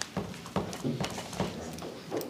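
A few light, irregular taps and knocks from papers and pens being handled on a meeting table.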